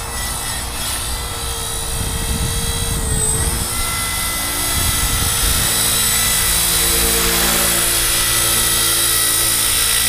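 Chaos 450PRO RC helicopter in flight: a steady rotor and motor whine that shifts in pitch about four seconds in and grows gradually louder as the model comes in low.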